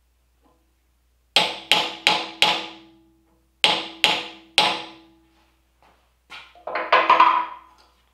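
A small hammer tapping a steel socket to drive a knife guard down onto the tang, seven sharp ringing taps in two quick runs of four and three. A short metallic clatter follows near the end as the tools are handled.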